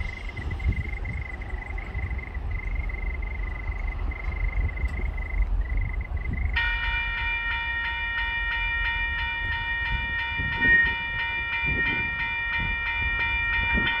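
Horn of approaching TasRail 2050-class diesel locomotives sounding one long, steady multi-tone blast. It starts suddenly about halfway through, over the low rumble of the train drawing near.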